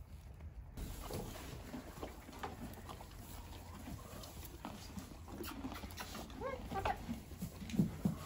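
Horses in a barn stall with loose hay: faint snuffling, rustling and small clicks. There is a brief pitched call about six and a half seconds in.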